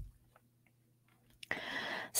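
A deck of tarot cards handled in the hands: a soft tap right at the start, a few faint clicks of the cards, then a brief soft rustle near the end as the deck is turned over.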